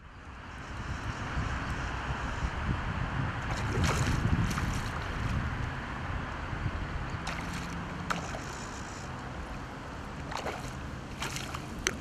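A hooked trout splashing and swirling at the surface while it is played on a bent fly rod, under steady wind noise on the microphone. A few short sharp splashes stand out, the loudest about four seconds in.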